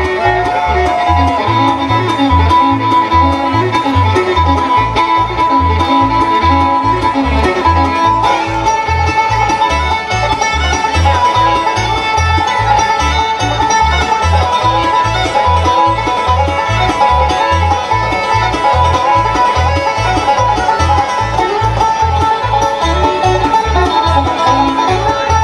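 Live bluegrass band playing an instrumental old-time fiddle tune, with fiddle and banjo leading over acoustic guitar, mandolin and upright bass. The bass keeps a steady beat under the melody.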